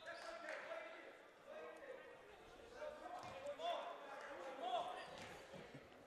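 Faint gymnasium ambience: distant voices and calls from the court and benches, echoing in a large hall.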